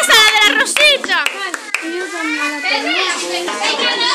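Girls and children shouting and squealing over one another in high, excited voices, with sharp rising and falling squeals in the first second.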